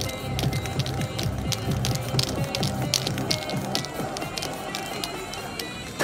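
Music playing, with a low bass line and frequent short, sharp high hits.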